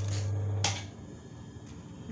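A steady low hum with a sharp click about two-thirds of a second in. The hum cuts off just under a second in, leaving only a faint background.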